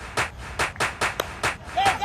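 Hand-clapping in a fast, steady rhythm of about five claps a second, with a voice coming in near the end.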